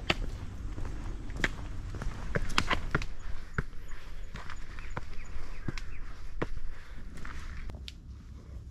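Footsteps on a rocky dirt and stone-step hiking trail: irregular crunches and scuffs, about one or two a second.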